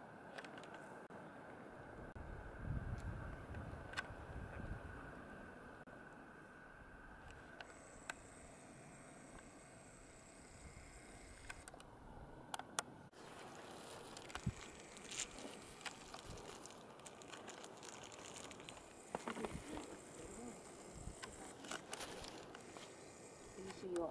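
Faint outdoor ambience: low wind rumble on the microphone a few seconds in, a few sharp clicks near the middle, and faint distant voices.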